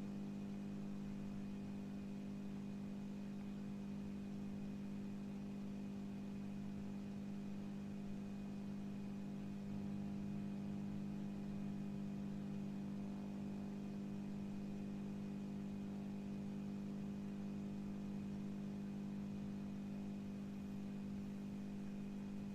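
Steady low electrical hum made of several constant tones under a faint hiss, unchanging throughout.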